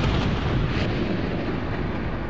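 Loud, dense rumbling noise like explosions on the album recording, with no clear melody or beat, slowly fading.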